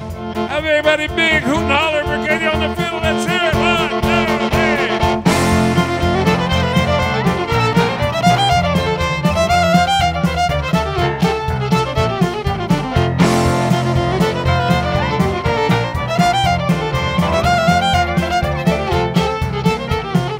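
Western swing band playing live, led by a fiddle playing a sliding, wavering solo line over bass and rhythm. About five seconds in, the full band comes in hard and drives on with a steady beat.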